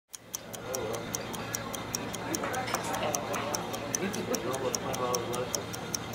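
A fast, even ticking, about five ticks a second, over a low murmur of voices.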